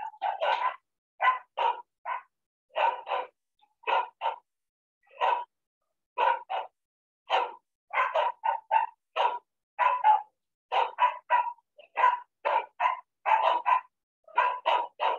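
A dog barking over and over, about thirty short barks, often in pairs or quick clusters with silence between them, coming faster in the second half.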